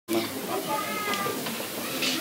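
People talking in a hall, with a thin, high-pitched voice rising and falling above the chatter.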